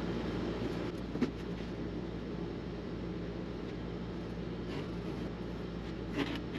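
Steady low room hum, like a running fan, with a faint tap about a second in and a few light ticks near the end as a pencil and template are worked over a wooden guitar plate.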